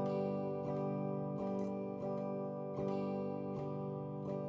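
Electric guitar strumming chords, a stroke about every two-thirds of a second, the chords ringing on between strokes.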